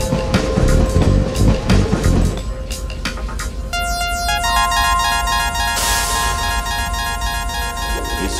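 Electronic dub music: a heavy bass beat that drops out about two seconds in, leaving a deep sustained bass and steady synth tones with a rippling high repeating pattern, and a brief hiss-like swell near the middle.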